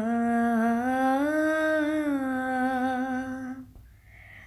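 A woman singing a prayer solo and unaccompanied, in long held notes that glide slowly up and down in pitch. The last note fades out about three and a half seconds in.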